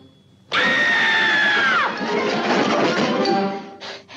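Cartoon soundtrack sound effects: after a brief hush, a sudden loud burst of dense noise with a whistle-like tone that holds, then slides down in pitch and cuts out, the din running on for another couple of seconds.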